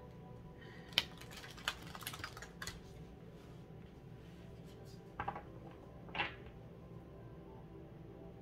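A deck of oracle cards handled and shuffled by hand: short crisp card clacks and rustles, a cluster in the first few seconds and two more around five and six seconds in, over soft background music.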